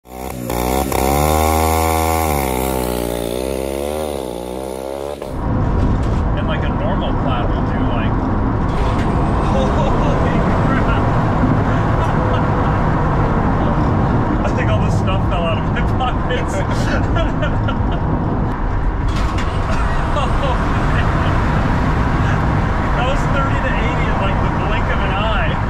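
A pitched sound sweeps up and down for about five seconds and cuts off suddenly. After it comes steady, loud engine and road noise inside a stripped-out race car's cabin, with a low rumble.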